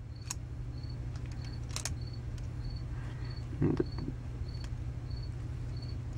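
A cricket chirping faintly at an even pace, about one and a half chirps a second, over a low steady hum. There are two light plastic clicks in the first two seconds as a LEGO Technic model is handled, and a brief low murmur a little past halfway.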